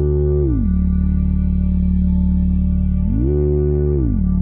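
Background music score: a sustained low drone of held tones, with a chord that bends up in pitch and back down twice, near the start and again about three seconds in.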